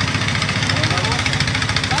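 An engine idling steadily, with a fast, even firing beat.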